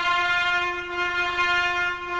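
Instrumental music: one long held trumpet note that comes in sharply at the start and stays steady.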